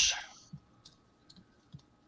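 A few faint, separate clicks, about four spread over a second and a half.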